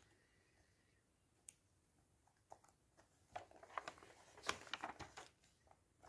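Faint rustling and soft flicks of glossy paper pages being turned by hand in a thick paperback comic collection, in the second half; before that almost silent, with one small click.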